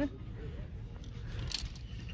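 Clothes hangers clinking as they are slid along a metal clothing rack, one brief metallic clink about one and a half seconds in, over the low steady background noise of a large store.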